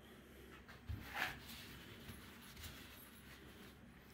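Quiet room with faint handling noise: a soft bump about a second in and a short rustle just after it.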